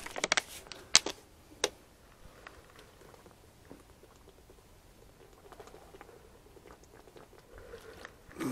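Thin plastic water bottle crackling and clicking sharply a few times as it is handled and opened, then faint small sounds of drinking from it.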